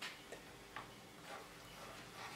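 A walking cane being handled on a table: a few faint, irregular ticks against quiet room tone.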